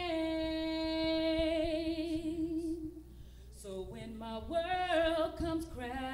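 A woman singing a gospel song, holding one long note for about three seconds with vibrato coming in toward its end, then going on with shorter sung notes from about halfway through.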